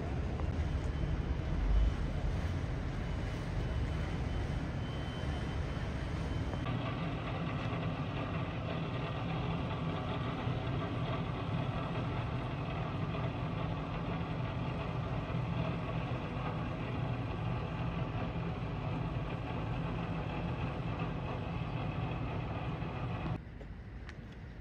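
Low, steady engine rumble of motor yachts under way, with a brief low thump about two seconds in. The sound changes abruptly about seven seconds in and drops sharply just before the end.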